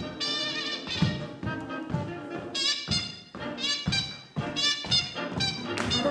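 Swing jazz recording led by brass instruments, quick runs of notes over a steady beat of about two thumps a second.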